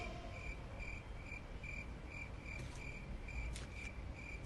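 Faint, evenly spaced high chirps repeating about twice a second, like a cricket chirping, in an otherwise quiet pause.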